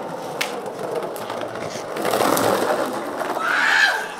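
Skateboard wheels rolling on pavement, with a few sharp clicks, then a short rising high-pitched cry near the end.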